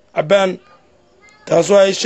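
A person's voice speaking in short phrases, with a pause of about a second in the middle.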